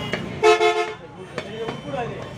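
A vehicle horn gives one short toot of about half a second, starting about half a second in, over the chatter of voices around the stall. A single sharp click follows a little later.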